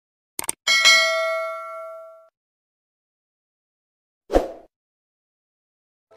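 Subscribe-button animation sound effects: a quick double mouse click, then a notification-bell ding that rings and fades over about a second and a half. About four and a half seconds in there is a short thump.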